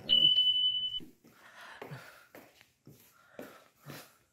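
A single steady electronic beep lasting just under a second, the sound effect of an on-screen subscribe-button animation. Faint scattered taps follow.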